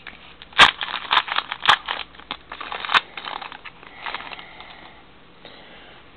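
Wrapper of a Topps Magic football card pack being torn open and crinkled, with sharp crackles through the first three seconds, the loudest about half a second in, then quieter rustling.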